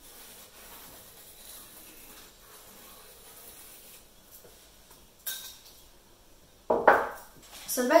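Pencil scratching faintly as it traces around an upturned ceramic bowl on card. A short click about five seconds in, then a louder clatter of the ceramic bowl being moved and set down near the end.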